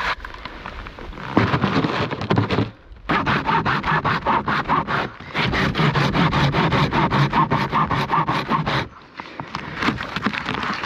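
Hand saw cutting back and forth through a dry, barkless dead log in quick, even strokes, broken by three short pauses.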